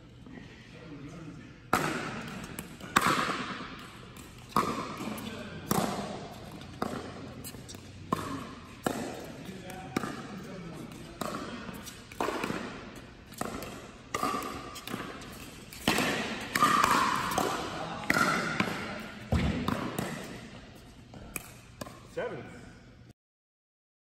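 Pickleball rally: paddles striking a hollow plastic ball and the ball bouncing on the court, sharp pops roughly once a second, echoing in a large indoor hall.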